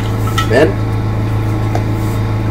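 A steady low machine hum, with a voice saying one short word about half a second in.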